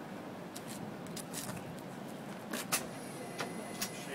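Scattered metal clicks and clatter from a Stryker powered stretcher being pushed into an ambulance on the Power-LOAD system, the sharpest click a little under three seconds in, over steady background noise.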